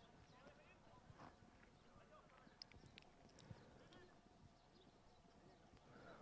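Near silence, with faint scattered hoofbeats of polo ponies walking on grass.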